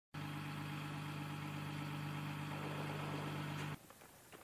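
A steady engine hum with a low, unchanging pitch, cutting off suddenly near the end.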